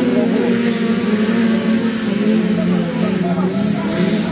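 Several Volkswagen Beetle autocross cars running on the circuit together, their engines continuous, with pitches wavering up and down as they lap.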